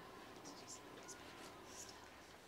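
Faint pencil strokes on paper as numbers are written out, in two short spells about half a second in and near the end.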